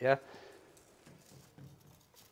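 A man's voice says a brief "yeah?", then near-quiet workshop room tone with only a faint low murmur.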